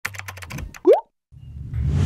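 Intro sting sound effects: a fast run of pops, then a quick upward 'bloop' glide about a second in. After a short gap, a low whoosh swells up toward the end.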